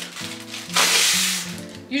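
A short hiss of breath blown into a clear plastic zip-top bag to puff it open, about a second in, over steady background music.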